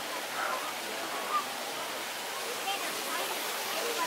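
Steady rush of running water, with faint, indistinct voices of people nearby.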